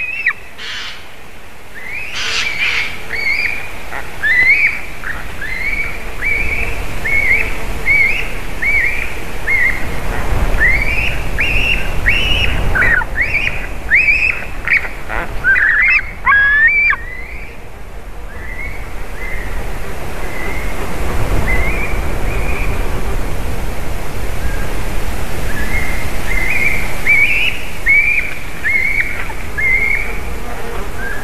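Young eagle calling: long series of short, repeated high, whistled begging cries, each note dropping in pitch, coming thick and fast, pausing briefly just past halfway, then starting again. A low rumble swells under the calls at times.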